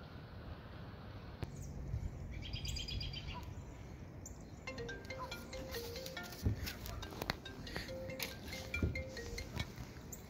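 A simple melody of short, stepping notes begins about five seconds in. It is broken by two dull thumps. Earlier, a brief run of rapid high chirps.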